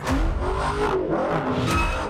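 Dodge Challenger's engine revving hard through a drift, its pitch rising and falling, with tires squealing and skidding on the asphalt. The sound starts abruptly.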